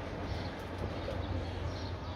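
Steady outdoor background: a constant low rumble with faint high chirps now and then.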